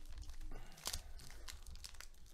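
A foil trading-card pack wrapper being torn open and crinkled by hand, with irregular crackles, the sharpest a little before a second in.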